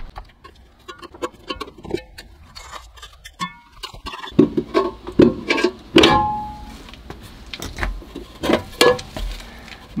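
Metal clicks and knocks as a large chrome hubcap is worked off a car's rear wheel, getting louder partway through. About six seconds in there is a sharp clank with a short metallic ring.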